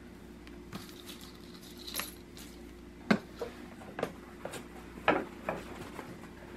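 Scattered light clicks and knocks of craft supplies being handled on a tabletop, about seven in all, the loudest a little after three seconds and again about five seconds in, including a plastic glue bottle being set down.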